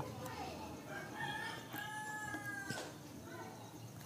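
A faint, drawn-out pitched call in the background. It begins about a second in, ends in a steady held note, and lasts about a second and a half.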